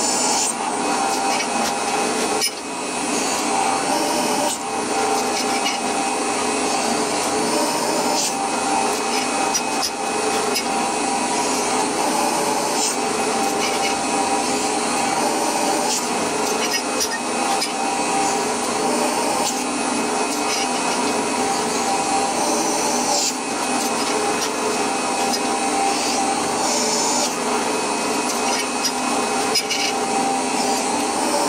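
Bench drill press running steadily with a constant motor whine, its bit drilling 5.5 mm clearance holes through small steel bracket plates.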